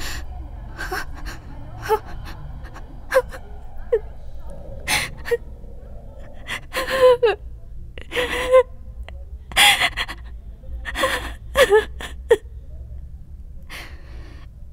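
A woman sobbing: sharp gasping breaths at first, then from about halfway a string of short, wavering crying wails, over a low steady hum.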